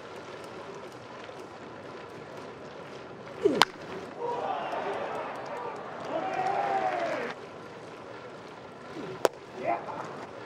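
Baseball game broadcast: a sharp crack of a bat hitting the ball about three and a half seconds in, followed by a few seconds of louder voices and crowd noise as the play unfolds. Another sharp crack comes near the end, over steady ballpark background noise.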